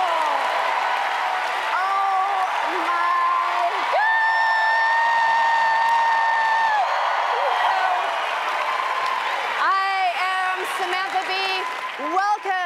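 Large audience applauding and cheering a host's entrance, with whoops over the clapping and one long held shout in the middle. Near the end a woman's voice starts speaking over the applause.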